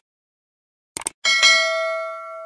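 A quick double click about a second in, then a bright bell ding that rings on and slowly fades: the click and notification-bell sound effect of a subscribe-button animation.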